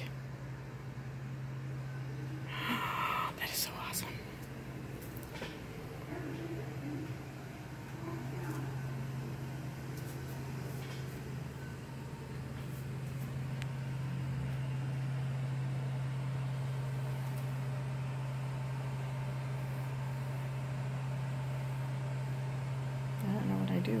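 Savioke Relay hotel delivery robot approaching with a steady low hum, which grows a little louder about halfway through as the robot comes close.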